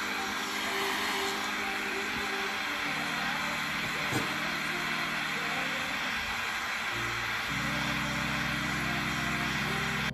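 Small handheld eyelash-extension fan running with a steady airy whir, blowing on freshly glued lash clusters to dry the adhesive.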